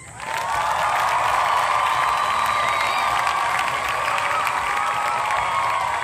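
Insect chorus that starts abruptly and then keeps up a loud, steady drone at one high pitch.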